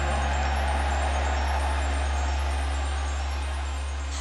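Last held low synth note of a J-pop song ringing on as the music ends, under the steady noise of a cheering concert audience.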